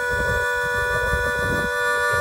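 Harmonica holding one long steady chord.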